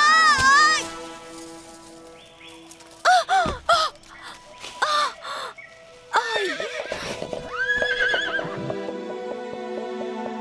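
A cartoon unicorn whinnying several times, its calls wavering and falling in pitch, over steady background music.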